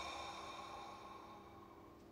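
A man's long, slow exhale releasing a held breath, fading out over the first second and a half and leaving a faint steady room hum.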